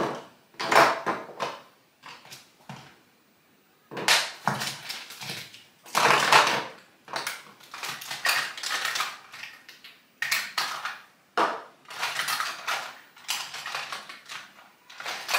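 Makeup containers and packaging being rummaged through on a table: irregular clattering and rustling, with a short lull about three seconds in.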